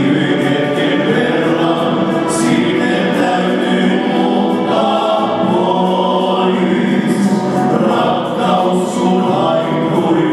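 Male vocal group of five singing a slow song in close harmony into handheld microphones, the voices holding long notes.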